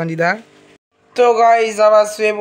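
A person's voice talking, broken off about half a second in by a short silence at an edit, then a voice again.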